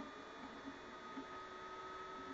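Faint steady electrical hum and hiss, the recording's background noise with no distinct sound event.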